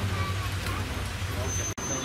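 Faint background chatter of voices over a steady low hum, broken by an abrupt cut near the end.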